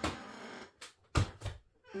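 Chair squeaking in a drawn-out, squealing creak for the first half-second or so, followed by a thump just over a second in and a smaller one soon after.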